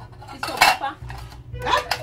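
Pots and dishes clattering as they are handled, in two short bursts about a second apart.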